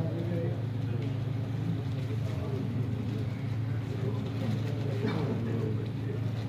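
Indistinct chatter from several people over a steady low mechanical hum.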